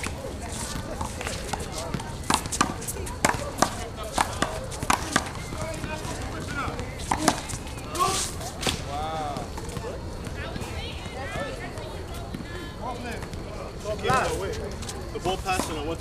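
One-wall handball rally: sharp slaps of the ball off hands, the wall and the court in quick irregular succession, thickest in the first half, with footsteps on the court. Voices call out a few times in the second half.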